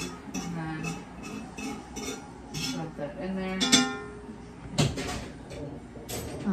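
A metal utensil scraping and knocking against a cast-iron skillet, in a string of sharp clicks and taps with a louder knock near the middle and again near the end, as the last of the browned ground beef is scraped out. A woman's voice hums a wordless tune over it.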